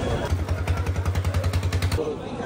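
A small engine running at idle close by, with a steady, even beat of about ten pulses a second. It starts about a third of a second in.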